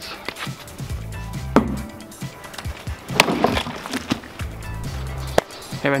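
Background music with a steady beat, over which a homemade spiked war flail strikes a coconut: two sharp knocks, about a second and a half in and again about three seconds in, the second the louder.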